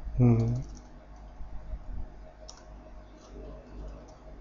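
Computer keyboard keystrokes, scattered clicks while a command is typed. A short hum from a man's voice just after the start is the loudest sound.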